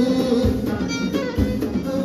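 Live Amazigh chaabi band music: a violin and a plucked string instrument play over a bass drum beating about once a second.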